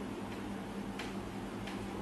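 Marker pen tapping against a whiteboard while writing figures, a few light ticks over a steady low hum.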